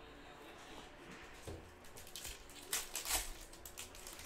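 Foil trading-card pack wrapper crinkling in the hands: a few short rustles a little past halfway, the loudest two close together.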